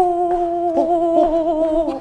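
A man imitating a steam locomotive's whistle with his voice: one long held hummed 'poo' note that wavers a little and dips slightly in pitch near the end.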